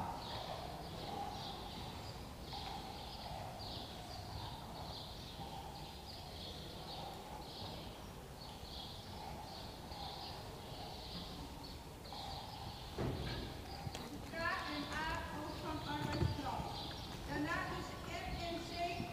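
A Friesian horse trotting in harness and pulling a four-wheeled carriage over arena sand: a steady rhythm of muffled hoofbeats and carriage rattle, about one and a half beats a second. It is broken near the end by a few louder knocks.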